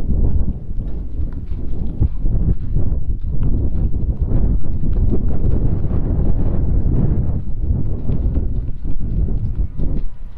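Footsteps on snow, a dense run of irregular knocks over a steady low rumble.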